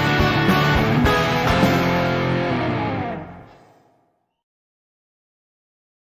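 A four-piece rock band (electric guitars, bass and drums) playing the end of a song. The music dies away over about a second, starting about three seconds in, and leaves silence.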